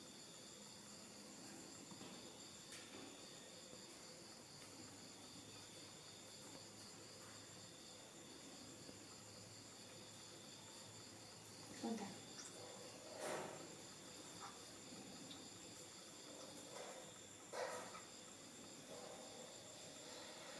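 Near silence, with faint steady high-pitched insect chirring throughout and a few brief soft sounds, one about twelve seconds in, one just after, and one near the end.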